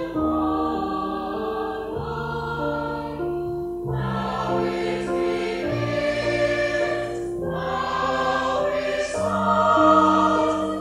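Mixed choir singing sustained chords to electric keyboard accompaniment, the harmony moving every couple of seconds over a held bass line.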